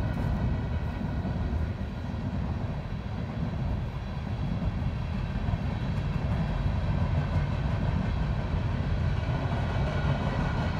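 A steady low rumble of background noise, with faint steady tones above it and no distinct events.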